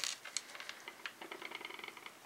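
Small metal screws clicking together as a tiny screw is picked out of a loose pile on the bench: one sharper click at the start, then scattered light ticks and a quick run of faint ticks in the second half.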